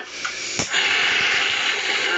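Handheld gas torch lit with a click about half a second in, then its flame hissing steadily as she starts soldering silver earrings.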